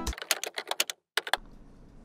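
Music playback cuts off at the start, followed by a quick run of about ten computer keyboard keystrokes over the first second and a half, then near quiet.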